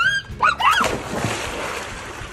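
A few short high cries, then a splash and churning water as someone jumps feet-first into a swimming pool, the water noise fading over the second half.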